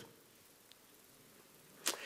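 Near silence of room tone during a pause in a lecture, with a faint tick partway through and a short sharp sound just before the end.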